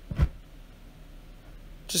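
A single short, dull thump just after the start, followed by a faint low steady hum until a voice comes in at the very end.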